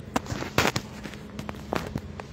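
Irregular sharp clicks and knocks, with a louder rustling burst about half a second in and a few more clicks near the end.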